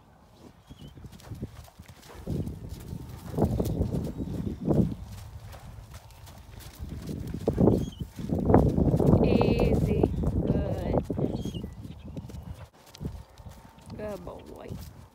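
Horses' hooves moving on the ground as ponies are being worked, in two louder stretches of low rumbling noise. A brief high wavering call sounds about two-thirds of the way through.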